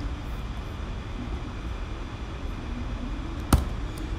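Steady low background hum with a single sharp click about three and a half seconds in.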